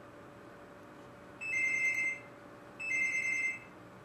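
Phone ringing: two electronic rings, each a pair of steady high tones just under a second long, about half a second apart.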